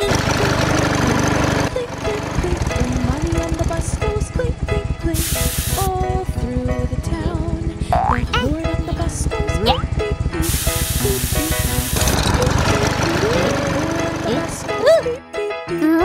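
Cartoon music with sound effects for a toy bus. A fast, even engine-like rattle starts about two seconds in and runs almost to the end, with two short bursts of hiss and a few quick rising pitch glides layered on top.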